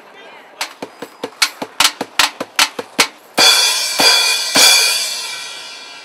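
Street drum kit played live: a quick run of sharp drum strikes, about five a second, then two loud cymbal crashes about a second apart that ring on and fade away.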